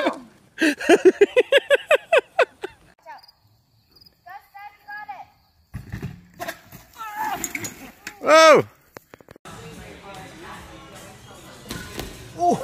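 A person laughing in quick bursts, then scattered voices from a fail-video clip. About two-thirds through comes one loud cry that rises and falls in pitch, followed by faint steady background sound.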